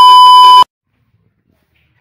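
Loud, steady high test-tone beep with a faint hiss of static, the sound of a TV colour-bars test screen. It cuts off abruptly less than a second in.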